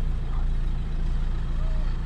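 Car engine idling with a steady low hum, heard from inside the cabin.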